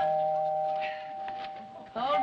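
A doorbell chime rings once at the start and fades away over about two seconds.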